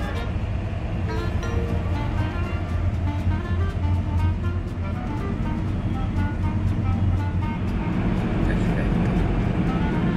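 Music with a melody of short notes over the steady low rumble of a car driving.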